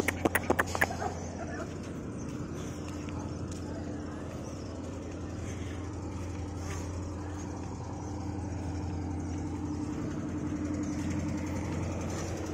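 A duck quacking in a quick run during the first second, then a steady low engine hum, from a motorboat on the river, running on to the end.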